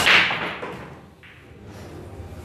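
Pool break shot: a sharp crack as the cue ball smashes into the racked 9-ball rack, then the balls clattering and scattering, dying away within about a second, with a softer knock just over a second in.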